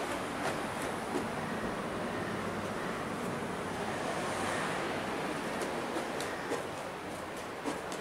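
Steady, even background hiss with a few faint clicks, a little quieter near the end.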